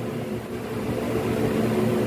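Steady low hum of running machinery, with several held low tones and no sudden changes.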